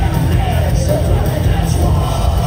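Industrial rock band playing live through a loud PA, with a heavy, dense low end and a voice singing into the microphone.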